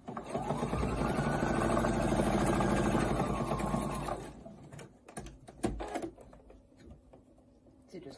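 Husqvarna electric sewing machine stitching a seam in polar fleece: the motor speeds up, runs at a fast, even stitch rate, and slows to a stop about four seconds in. A few light clicks follow.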